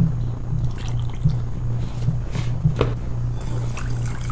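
White vinegar poured from a plastic measuring cup into a ceramic bowl of sugar, then chopsticks stirring the brine with a few light clicks against the bowl, over a steady low hum.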